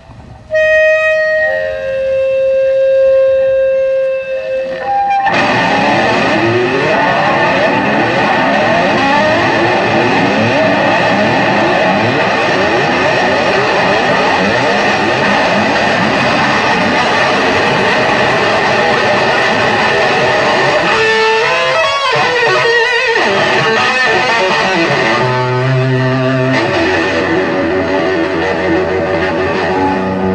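Distorted electric guitar played live through effects: a few long held notes, then a dense, continuous distorted wash of sound from about five seconds in. The sound thins briefly after twenty seconds, and low bass notes join under a guitar riff near the end.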